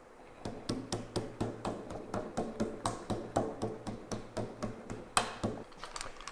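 A quick, even series of sharp clicks or knocks, about four a second, with one louder knock near the end.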